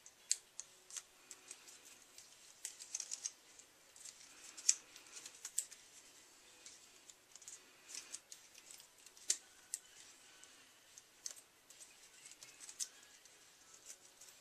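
Faint, irregular paper crackles and clicks as small designer-paper circles are handled and pressed down overlapping onto an ornament bulb.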